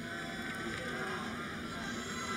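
Steady background noise of a football stadium crowd, low and even, with a few faint wavering voices or tones in it and no single event standing out.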